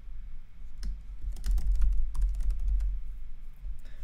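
Typing on a computer keyboard: an irregular run of key clicks starting about a second in, over a low steady hum.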